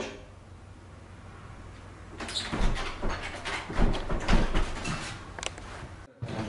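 An apartment door's metal handle being rattled and the door shaken in its frame: a run of irregular clicks and knocks with a few dull thuds, starting about two seconds in.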